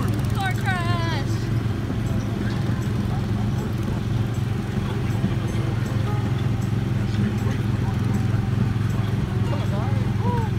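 The small gasoline engine of a Tomorrowland Speedway race car running under way as the car is driven along the track, a steady low drone throughout.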